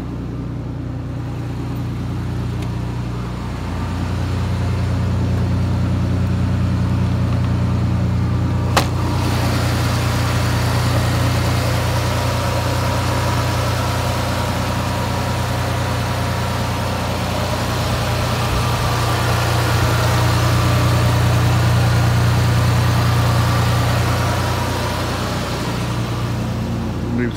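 Audi V6 five-valve engine idling steadily, with one sharp click about nine seconds in.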